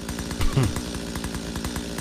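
Chainsaw sound effect, the saw running steadily.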